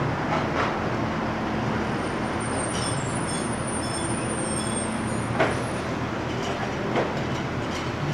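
Steady urban traffic rumble with a low engine hum, broken by a few short knocks, the sharpest about five and a half seconds in.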